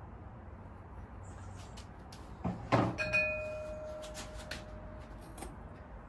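Glaze-fired ceramic pieces knocking together as they are lifted out of an electric kiln. Two sharp knocks come about two and a half seconds in, and one of the pieces then rings clearly for about two seconds as the ring fades. Lighter clicks follow.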